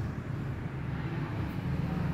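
Steady low rumble of background noise with a faint click about one and a half seconds in.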